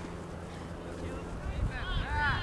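Wind rumbling on the microphone, with sideline spectators shouting near the end.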